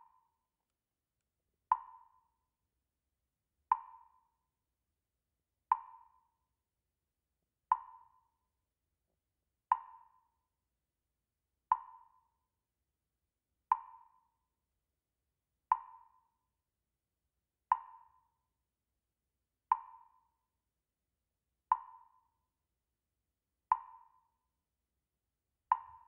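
A slow, even beat of short knocks, like a wood block or metronome tick, one every two seconds, each with a brief ring.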